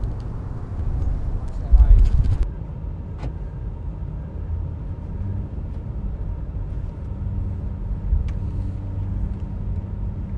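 A steady low engine and road rumble from a vehicle driving in a motorcade, heard from on board. It comes in after a loud burst of wind buffeting the microphone about two seconds in.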